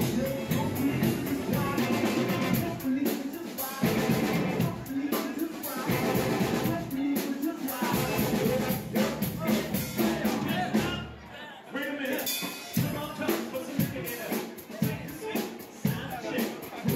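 Live band playing upbeat music with a drum kit beat, with guests' voices over it; the music drops back briefly a little past the middle.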